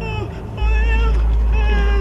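A woman wailing in long, wavering, high-pitched cries that break off and start again, over a deep low hum that drops out and returns.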